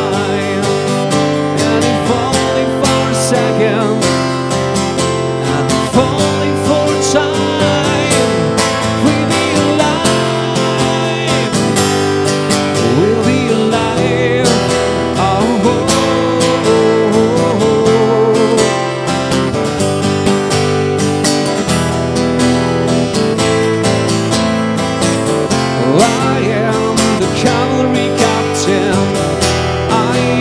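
Acoustic guitar strummed steadily in a live solo performance, with a voice singing a wordless melody over it at times.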